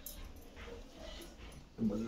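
Faint low voices murmuring in a room, then a louder voice speaking or chanting from just before the end.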